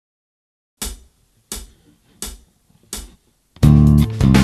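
Four evenly spaced count-in clicks, about one every 0.7 seconds, then a groove starts with an electric bass guitar playing a riff over a backing track with drums and guitar.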